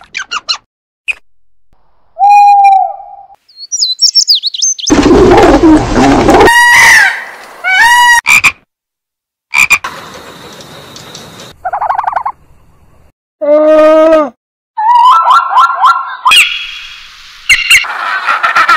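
A rapid string of different animal calls and cries, each lasting about a second, cut one after another with abrupt silences between them; some are pitched calls that bend up and down, others short chirps.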